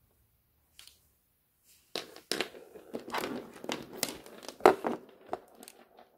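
Handling noise at a table: from about two seconds in, a run of rustling and crinkling with many sharp clicks, the loudest near the end, as a multimeter is picked up.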